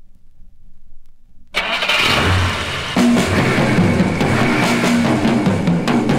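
A 1960s rock-and-roll 45 rpm single starting to play: faint record surface noise, then about a second and a half in a sudden loud, noisy opening sound, with the band's drums and bass coming in at about three seconds.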